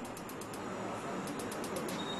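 Gas hob clicking rapidly, about ten clicks a second, as its control knob is held in, in two runs, the second near the end. A steady low hiss from the lit burner runs underneath.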